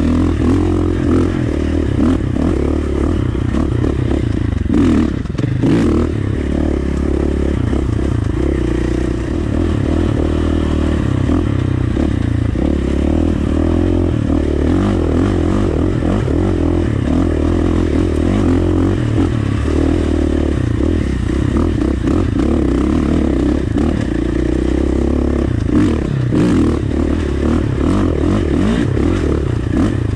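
2019 KTM 450 single-cylinder four-stroke dirt bike engine running on and off the throttle while riding rocky single track, with rocks and gravel clattering under the tyres.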